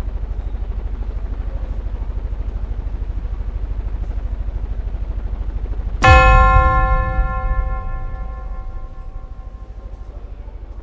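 A steady low, fast-pulsing hum, then about six seconds in a sudden loud bell-like metallic hit that rings on and dies away over about four seconds: a dramatic impact sound effect.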